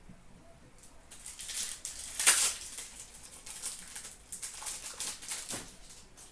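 Trading cards and their pack wrappers being handled: crisp rustling, crinkling and flicking in quick bursts, loudest about two seconds in.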